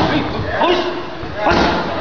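Strikes from boxing gloves landing on a trainer's Thai pads: a sharp thud right at the start and another about a second and a half in, with short shouted calls between.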